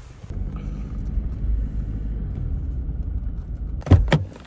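Steady low road rumble inside a moving car's cabin. Near the end, a sharp click from the interior door handle and latch as the door is opened.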